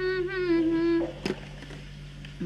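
A woman humming one held note with her lips closed, stopping about a second in, followed by a single short click.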